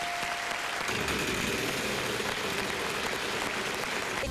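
Studio audience applauding steadily, with a steady electronic tone from the puzzle board stopping under a second in.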